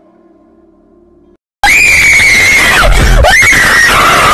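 Faint eerie music cuts out, and about a second and a half in a very loud, piercing shriek starts: a long high scream that falls away and is taken up again by a second scream about three seconds in, a ghost's scream effect for a jump scare.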